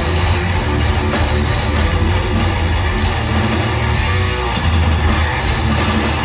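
Heavy metal band playing live at full volume: distorted electric guitars and a drum kit in a dense, unbroken wall of sound with heavy low end, heard from the crowd.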